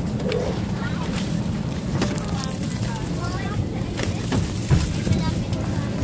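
Steady low hum of an airliner cabin, with people talking over it and a few short knocks and rustles.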